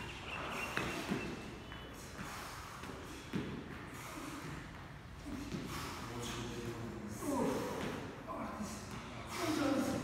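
Exercisers breathing hard in puffs while holding a plank and pulling a knee to the chest, with voices in the second half.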